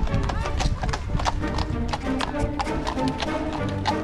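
Hooves of a pair of carriage horses clip-clopping on a paved road at a walk, an irregular run of knocks, with music and voices playing over it.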